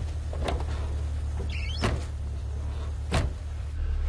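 Car doors opening and shutting: a few clunks, then a loud slam a little after three seconds, over the low steady hum of the car's engine idling.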